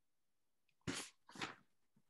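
A person's breath noise: two short, sharp, breathy bursts about half a second apart.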